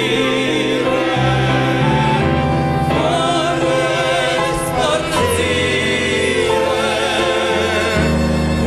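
A small mixed group of women and men sing a Christian hymn into microphones, in long held notes with vibrato, accompanied by a Yamaha digital piano.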